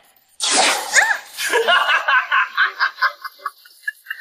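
A man laughing maniacally: a sharp breathy burst about half a second in, then a rapid string of short "ha" laughs, about five a second, fading near the end.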